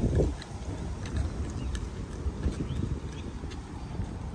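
Wind rumbling on a phone's microphone outdoors, with a few faint footsteps.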